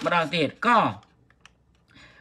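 A man's voice speaking for about a second, then a few faint clicks, typical of tapping on a computer keyboard.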